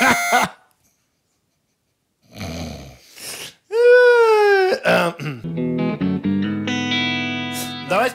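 Clean electric guitar through an amplifier: one note slides up and then sags in pitch while a tuning peg is turned, then single notes and chords ring out and sustain. A held tone cuts off just after the start, followed by about a second and a half of silence.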